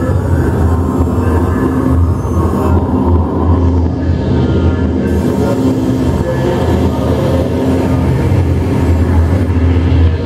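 Live industrial electronic drone music played on synthesizers: a thick, steady low drone with a dense noisy texture layered over it, holding at an even level with no beat.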